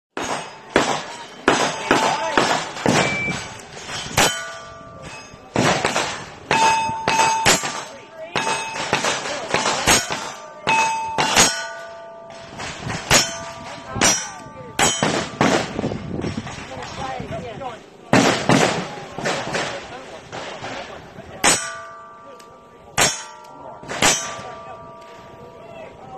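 A long string of gunshots, mostly under a second apart, many of them followed by the clang and short ring of a steel target being hit.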